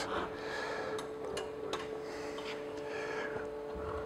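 Quiet steady hum with a few faint, light clicks in the first half.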